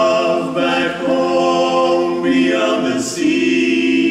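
Barbershop quartet of four men singing a cappella in close harmony, moving through sustained chords and holding one over the last second.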